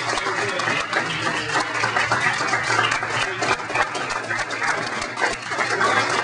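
Audience applauding steadily with dense clapping, mixed with some voices.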